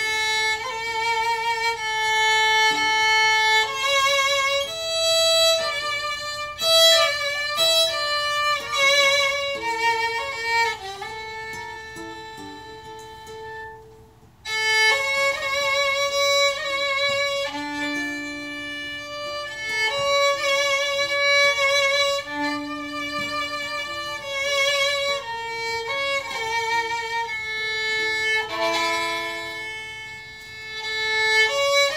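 Violin playing a Chabad melody, its held notes wavering with vibrato. The playing fades down and breaks off briefly about fourteen seconds in, then resumes.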